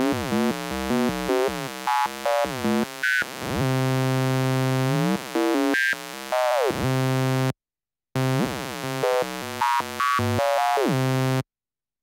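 Sawtooth synth patch in Kilohearts Phase Plant played through a frequency shifter, a buzzy tone whose partials sweep up and down in glides as the shift amount moves. It plays in two passages split by a short gap about seven and a half seconds in, and stops shortly before the end.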